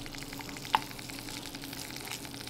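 Leftover tofu and rice sizzling as they reheat in a pan: an even crackle with a low steady hum underneath, and one sharp click about three quarters of a second in.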